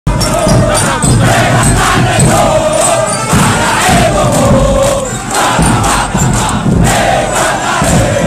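A large group of soldiers chanting a military yel-yel in unison, a loud sung chant that moves from note to note, with sharp beats keeping time.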